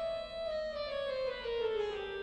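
A sustained, reedy pipe-organ tone from the trumpet stop, called up for tuning, rich in overtones. Its pitch rises slightly at first, then slides slowly and steadily downward.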